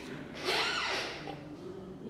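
A short breathy exhale close to the microphone, starting about half a second in and fading within a second, over a faint steady room hum.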